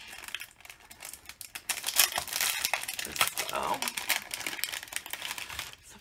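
Clear cellophane packaging of a scrapbooking ephemera pack crinkling as it is opened and the die-cut pieces are pulled out. The crackles come as a quick run starting about a second and a half in.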